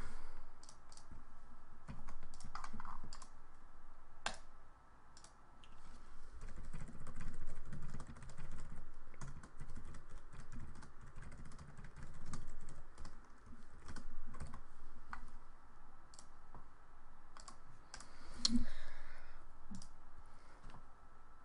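Typing on a computer keyboard: irregular runs of key clicks, with a brief louder sound near the end.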